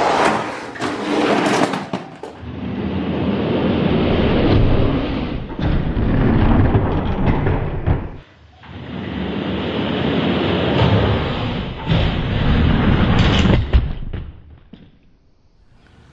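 Toy die-cast monster trucks rolling down a plastic race track: a continuous rumbling rattle with many small knocks, in two long stretches broken by a short gap about eight seconds in, dying away near the end.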